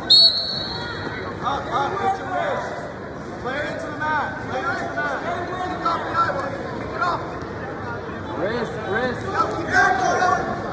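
A short, high referee's whistle right at the start, then overlapping shouted voices of coaches and spectators around a wrestling mat in a gym.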